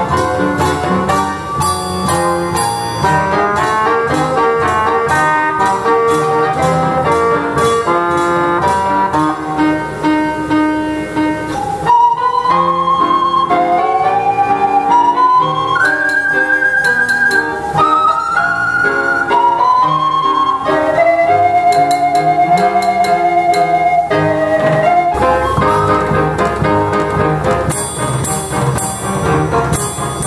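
A roll-operated mechanical music instrument plays a tune, first as a full ensemble with drum and cymbal strokes. About twelve seconds in it thins to a single held melody line with a wavering pitch, and the full ensemble comes back in near the end.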